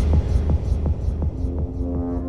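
Electronic dance music from a melodic techno DJ mix in a stripped-down passage: a deep throbbing bass drone under fast ticking percussion, about six ticks a second. The ticks fade and sustained synth chords come in during the second half.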